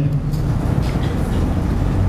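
Steady, fairly loud rumbling background noise with no speech.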